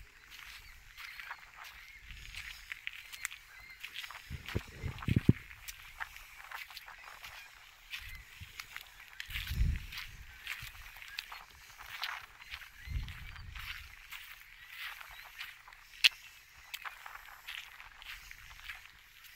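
Footsteps crunching on a crushed-gravel path and stone steps, a steady scatter of small crunches, with a few low thumps about five, nine and thirteen seconds in.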